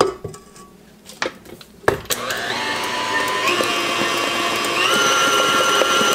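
Electric stand mixer switched on about two seconds in after a couple of sharp knocks, its motor whine stepping up in pitch a few times as the speed is raised while the flat beater works thick batter in the steel bowl.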